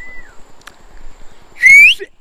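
One short, loud whistle rising in pitch near the end: a person's signal whistle to the operator on the far bank to start the cable trolley across the river.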